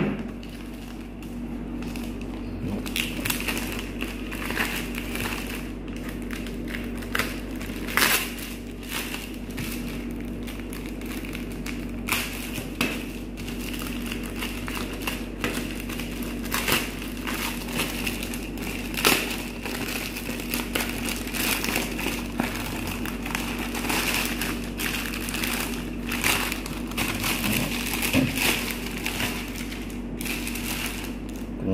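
Thin plastic courier mailer bag crinkling and crackling as it is sliced open with a utility knife and handled, in dense irregular rustles and small clicks, over a steady low hum.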